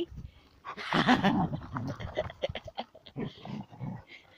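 Border collie vocalizing with one short, rough growling bark about a second in while playing with a ball, followed by a run of quieter short clicks and thumps.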